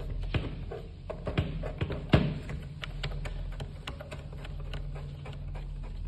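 Irregular small plastic clicks from the cutter-release wheel of a TVS RP3200 Plus thermal receipt printer being turned backward by finger, backing out a jammed auto-cutter blade. The clicks are sharpest in the first couple of seconds and grow fainter after, over a steady low hum.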